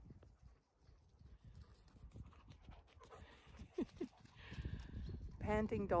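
A Zwartbles sheep bleating, one quavering call near the end, over a low rumble of wind on the microphone.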